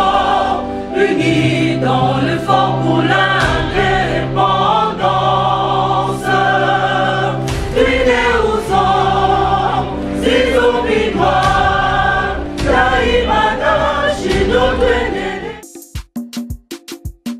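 Music with a choir singing over a steady bass line. Just before the end it cuts off abruptly and a quick, evenly spaced percussive beat starts.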